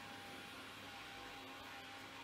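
Faint steady hiss with a low hum: the background noise (room tone) of a voice-over microphone.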